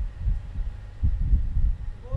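Low, uneven rumbling and buffeting of wind on an outdoor microphone, with no voice or music.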